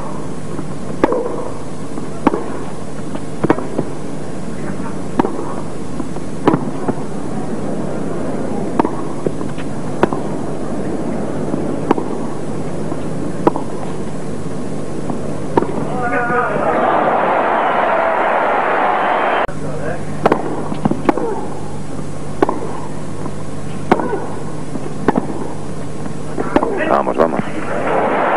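Tennis ball struck back and forth in a long baseline rally: sharp racket pops every second or so, with softer bounces between them, over a low steady broadcast hum. About sixteen seconds in, a swell of crowd noise lasts some three seconds before the hits go on.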